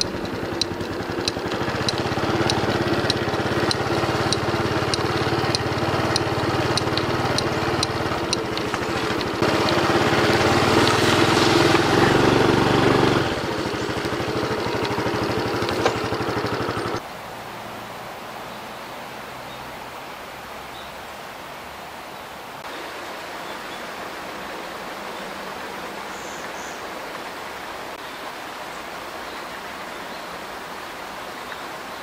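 A louder, steadily humming stretch with a regular ticking in its first part, cut off suddenly about halfway through. After that comes the steady rush of a mountain stream.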